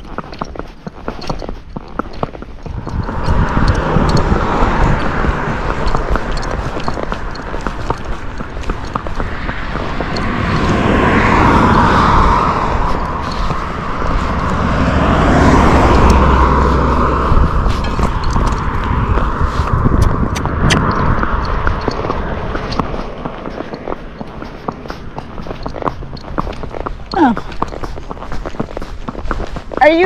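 A car passing close by on a paved road, its tyre and engine noise swelling to a peak midway and fading away, over the horse's hooves on the asphalt.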